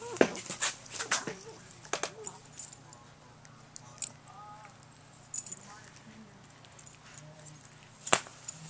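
French bulldog puppy playing with a plush toy on carpet: a burst of knocks and rustles from mouthing and tossing the toy in the first couple of seconds, with small whimpering noises, then quieter scattered chewing sounds.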